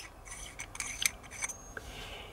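Small metal parts of a vape atomizer being handled, with light, irregular clicks and scraping.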